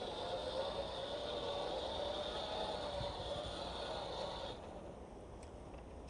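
The small motor of a handheld garden blower running steadily with a high whine, then cutting out about four and a half seconds in.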